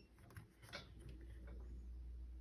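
Near silence: room tone with a low steady hum and a few faint clicks in the first second, as the pressure monitor and a sensor are handled.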